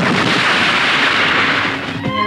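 Film sound effects of heavy gunfire and blasts, heard as a loud, continuous wash of noise that eases slightly near the end.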